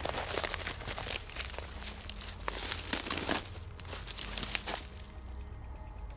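Irregular crackling and rustling of bankside vegetation as someone pushes through it, dense for about five seconds and then dying away.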